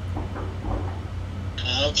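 A pause in a recorded conversation with a steady low electrical hum and faint murmurs, then a man's voice starts speaking near the end.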